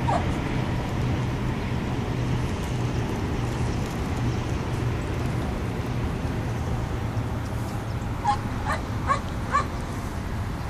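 A dog gives four short, high yips in quick succession near the end, over a steady low rumble.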